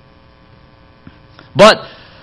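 Faint, steady electrical mains hum from the sound or recording system, several even tones held level. A faint tick about a second in, then a man's voice says "But" near the end.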